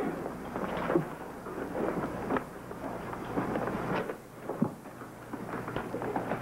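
Rustling and crinkling of a bag and paper being rummaged through and handled, with scattered small knocks.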